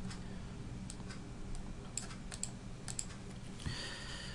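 Computer keyboard keystrokes, a scattered run of key clicks as column headers are typed, over a faint steady low hum.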